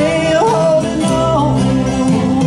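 Live gospel song: several acoustic guitars played together under a singing voice, which slides up into a held note about half a second in.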